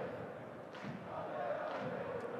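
Football stadium crowd: a steady murmur of many voices with faint chanting.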